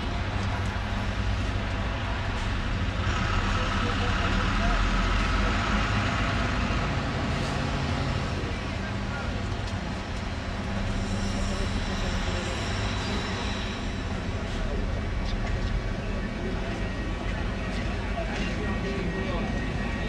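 Street and tram noise as a Ganz articulated tram tows a Siemens Combino along the tracks: a steady low rumble with a hiss that swells a few seconds in and then eases.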